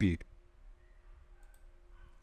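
A few faint computer mouse clicks, about one and a half seconds in, as a menu option is chosen, over a low steady room hum.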